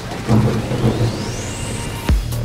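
Thunderstorm sound effect in the outro of a pop track: rain hiss, with a low rumble of thunder coming in about a third of a second in. Through the second half a thin high tone rises steadily in pitch.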